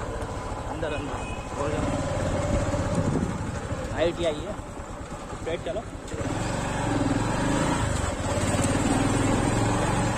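Motorcycle engine running as the bike is ridden along a road, growing louder in the second half.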